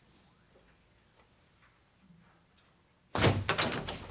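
Near silence, then about three seconds in a door opens with a sudden thunk followed by a few quick knocks.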